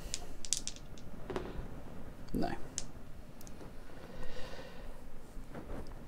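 A few light clicks and taps of dice being rolled on the tabletop for an armour roll, clustered in the first second or so with a couple more scattered after, and a short spoken word partway through.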